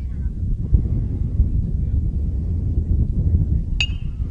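Steady wind rumble on the microphone, then, near the end, one sharp ringing ping of a metal baseball bat hitting the ball on a swing.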